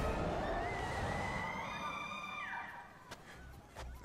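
A boy's long, held scream, rising slightly in pitch and fading away by about three seconds in as he is flung high into the air. It opens over a rush of noise.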